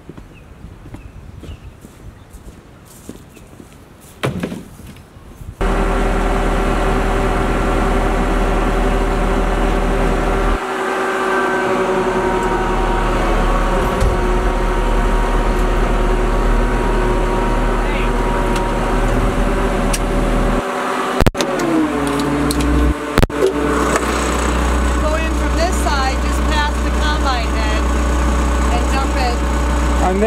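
A few quiet seconds with a single thump, then a Ford farm tractor's engine starts sounding suddenly and runs steadily, heard from inside its cab. About two-thirds of the way in there are a couple of clicks and the engine note falls, as it throttles down.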